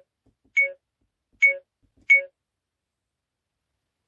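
A car dash cam giving short electronic key beeps as its buttons are pressed: three beeps about three-quarters of a second apart, each confirming a step through the settings menu toward formatting its memory card.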